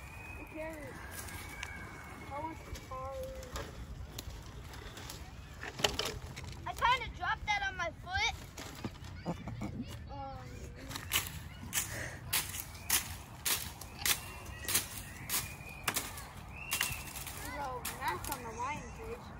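Footsteps crunching over dry twigs and brush at a walking pace, about one and a half steps a second through the second half, with children's voices at a distance earlier on.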